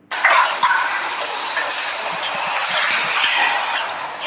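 Water dripping and splashing into a toilet bowl as a large snake is drawn up out of it, a steady wet patter.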